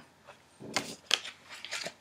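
Tarot cards being handled and laid down on the table: a few short papery rustles and taps.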